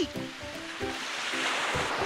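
Background music of short, separate low notes over a steady rushing noise that swells slightly toward the end.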